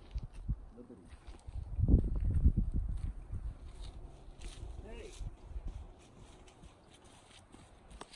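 Faint voices of people talking in the distance, with a low rumble on the microphone lasting about a second and a half, starting about two seconds in; the rumble is the loudest sound.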